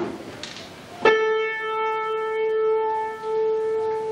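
A single piano key struck once about a second in and held down. Its note rings on steadily, the upper overtones fading away while the fundamental keeps sounding.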